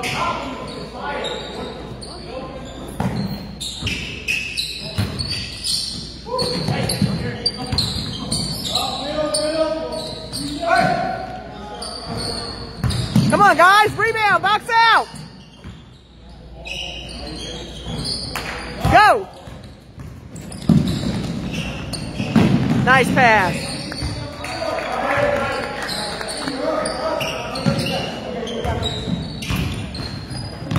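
Basketball game in a gym: the ball bouncing on the court amid the chatter of players and spectators, with bursts of high sneaker squeaks, the loudest about halfway through.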